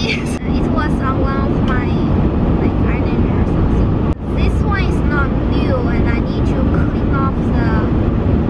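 Steady road and engine rumble inside the cabin of a moving car, with a person's voice over it.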